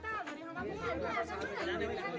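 Indistinct chatter of people's voices in the background, with no clear words.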